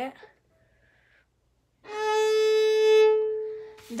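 Violin's open A string bowed in one long, steady note of about two seconds, starting about two seconds in. It swells slightly, then fades. It is the unfingered A string sounding its reference pitch.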